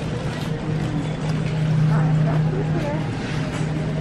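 Shopping cart being pushed along a supermarket aisle, giving a steady low droning hum with some rattle, with faint voices behind it.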